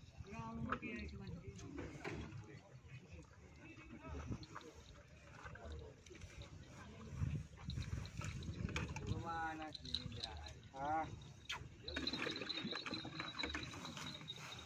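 Faint background talk of several people, with a few light knocks in between.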